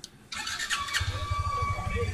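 Motorcycle engine idling in a low, even pulse, with a steady high-pitched squeal over it.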